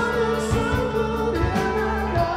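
Live pop rock band playing: a male singer holds a long note over electric bass and drums, with a steady run of quick cymbal strokes.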